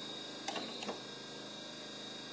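Two light clicks over a faint, steady hum, about half a second and just under a second in.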